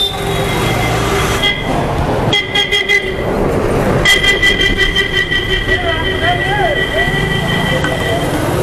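Vehicle horns sounding in street traffic: a short toot, another, then one held for about four seconds, from about four seconds in to the end.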